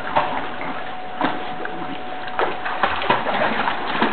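Pool water splashing and sloshing as a border collie swims, with a few sharper splashes among a steady wash.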